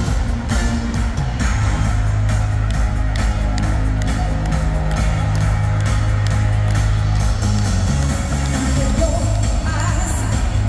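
Live pop music played loud over an arena sound system: a heavy, sustained bass line under a steady drum beat.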